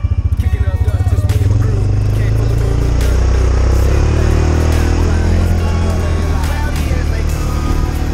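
Side-by-side UTV engine running on a dirt trail, its rapid low firing pulses smoothing into a steadier, louder drone about a second and a half in as it picks up speed. Music plays along with it.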